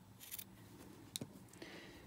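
Scissors snipping through stretch cotton T-shirt fabric, trimming off a seam allowance: a few faint short cuts, one a sharp click about a second in.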